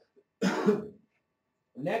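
A person's short cough, a noisy burst lasting about half a second. Speech starts again near the end.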